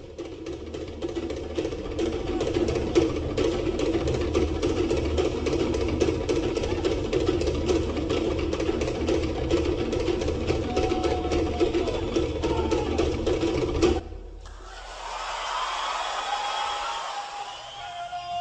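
Cook Islands drum ensemble playing a fast, dense, driving rhythm that stops abruptly about fourteen seconds in. Voices then take over, leading into traditional chanting.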